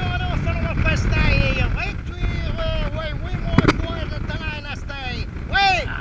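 Wind buffeting the microphone with a heavy low rumble, while voices talk over it; one sharp click about three and a half seconds in.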